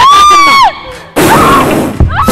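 A loud, high-pitched held shout that drops in pitch as it ends. About a second in, a loud, rough, noisy scream rises over crowd noise in a large hall.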